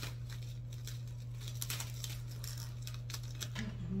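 Plastic cling wrap crinkling and crackling in a string of short, irregular rustles as it is stretched over plates of food, over a steady low hum.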